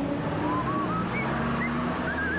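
Vintage truck's engine running steadily as it drives past, with street traffic noise and a few short bird chirps above it.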